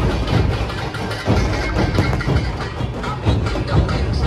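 A dhol-tasha troupe's massed dhol drums beating together in a loud, dense rhythm, with a brief lull in the deep drum strokes about a second in.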